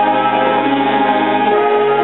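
School concert band playing a slow passage of held chords, with flute among the winds; the chord changes about one and a half seconds in.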